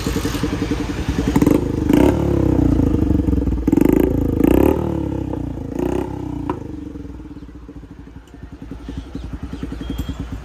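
Bajaj Platina's single-cylinder engine running through a newly fitted aftermarket SC Project-style silencer. It is revved in several quick throttle blips, each rising and falling in pitch, over the first seven seconds or so, then settles to a steady, quieter idle.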